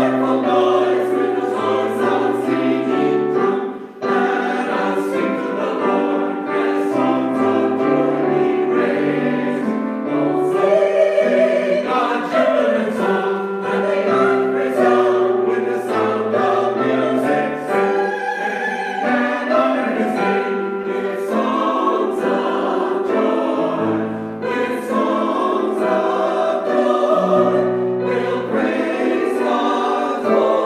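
A small mixed church choir singing in parts with piano accompaniment; sustained chords change steadily throughout.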